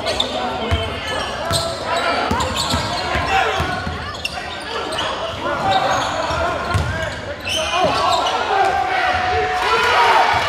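Live high school basketball game in a gym: a basketball bouncing on the hardwood floor as it is dribbled, with a hubbub of players' and spectators' voices echoing in the hall.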